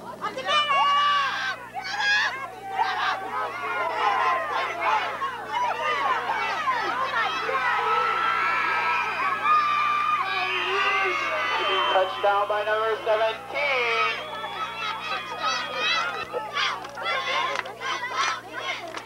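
Crowd of football spectators shouting and cheering, many voices at once with some high-pitched yells, busiest through the middle.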